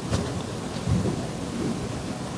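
Low, steady room noise with a soft click near the start and faint, indistinct voices in the middle.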